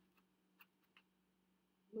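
Near silence: a few faint ticks as a paper folding fan with wooden ribs is held open and turned in the hands, over a faint steady hum.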